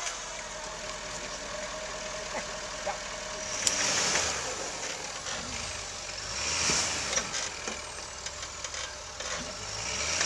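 Ford pickup truck's engine running, swelling twice in level, once about four seconds in and again near seven seconds.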